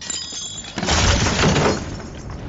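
Film sound effect of restraints shattering: debris clattering onto a stone floor, building to a heavier crash with a deep low end about a second in.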